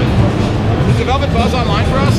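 People talking over the steady low background noise of a crowded trade-show hall.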